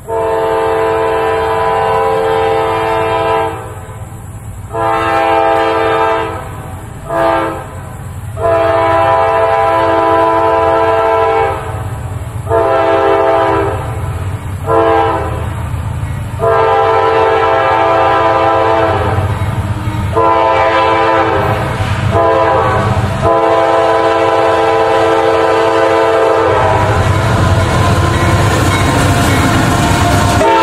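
An approaching CSX freight locomotive's multi-note air horn sounding long and short blasts in the grade-crossing pattern, repeated several times. Under it, a low rumble of engine and wheels swells near the end as the locomotive draws up.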